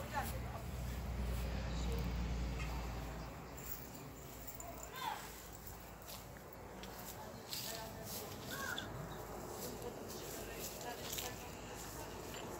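Outdoor ambience: a low rumble during the first few seconds, faint voices, and a few short, high chirping calls.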